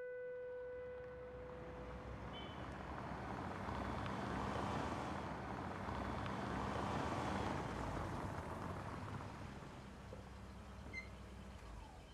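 A car driving across a paved lot: engine and tyre noise builds to its loudest in the middle, then eases off as the car slows and stops near the end.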